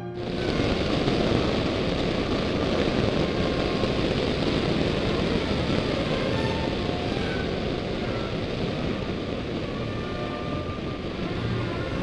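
Zenith CH701 light aircraft's engine and propeller running at takeoff power as it rolls down the runway, a dense steady noise that sets in about half a second in. Orchestral music plays faintly over it.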